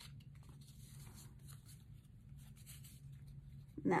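Faint rustling and light scraping of paper as a small kraft-paper envelope is handled and slid into a paper pocket of a handmade journal, over a low steady hum.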